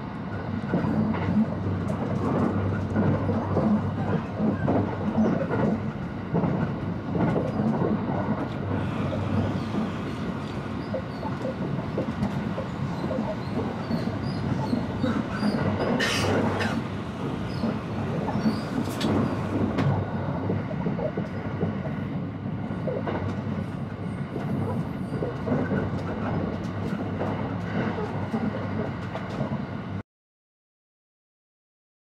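Steady running noise heard inside a limited express electric train at speed, the wheels rumbling on the rails. Two brief sharp bursts of noise come about halfway through.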